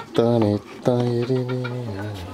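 A chicken giving a series of drawn-out calls, the last the longest and falling slightly in pitch.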